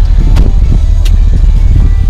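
Power-folding second-row seats of a 2016 GMC Yukon Denali folding down at the press of a cargo-area button, with two sharp clicks, under a loud steady low rumble.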